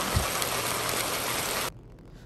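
Sliced pork head meat and wood ear mushroom sizzling in a hot pan as they are stir-fried with a wooden spatula: a steady hiss with a low knock just after the start. The sizzle cuts off suddenly near the end.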